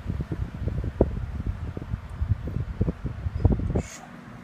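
Shinil SIF-F16 electric stand fan running, its airflow buffeting the microphone in irregular low rumbles. A short click near the end.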